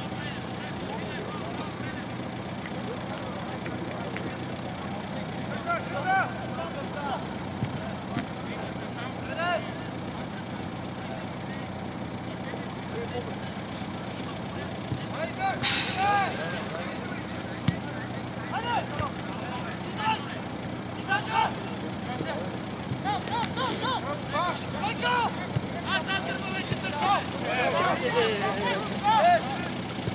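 Players shouting short calls to each other across a football pitch, scattered at first and coming thicker in the last few seconds, over a steady low hum.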